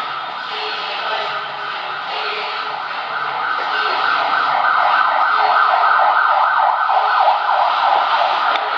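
An emergency-vehicle siren that grows louder about halfway through and then warbles quickly, about three times a second.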